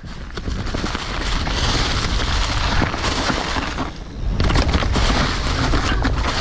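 Mountain bike riding fast downhill over a leaf-covered trail: wind buffets the helmet camera's microphone, and the tyres rush through dry leaves under it. The noise builds in the first second, dips briefly around four seconds in, then picks up again.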